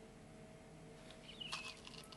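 Faint clicks and rattles of sodium hydroxide pellets being tipped a few at a time from a small plastic pot onto an electronic balance's weighing boat, in the second half, with a brief squeak partway through.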